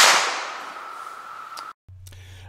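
A Pedersoli Model 1859 Sharps infantry rifle firing a paper cartridge: one loud shot right at the start, the percussion cap having set off the powder charge, its echo dying away over about a second and a half before the sound cuts off abruptly.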